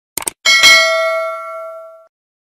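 Subscribe-button animation sound effect: a quick double click, then a bell ding that rings out and fades over about a second and a half.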